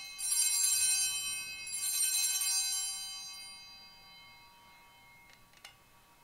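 Altar bells rung at the elevation of the consecrated host, struck twice about a second and a half apart, each ringing out and fading over a few seconds. A couple of faint clicks follow near the end.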